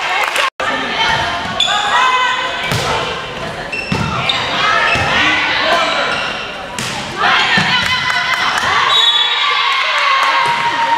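Indoor volleyball rally: the ball is struck with several sharp thuds over the voices of players and spectators shouting and calling. The sound cuts out completely for an instant about half a second in.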